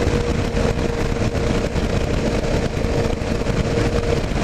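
Kawasaki KLR 650 single-cylinder motorcycle engine running at a steady cruise, mixed with heavy wind rush on a helmet-mounted camera, and a steady mid-pitched hum.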